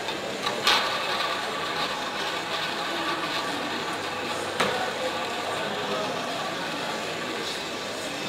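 Roulette ball rolling around the track of a spinning roulette wheel, a steady whirring run, with two sharp clicks of casino chips, one about a second in and one around the middle, over a murmur of voices.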